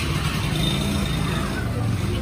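Street traffic noise: a steady low rumble of road vehicles, with faint voices of people on the sidewalk in the background.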